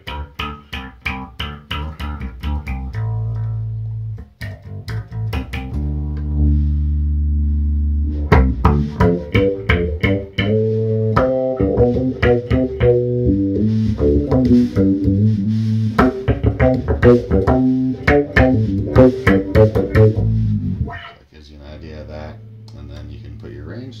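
Electric bass played through a Mu-Tron III envelope filter set with the drive down for a backwards-envelope effect. Quick plucked notes come first, then a few long held low notes, then a busy riff from about eight seconds in, easing to softer notes near the end.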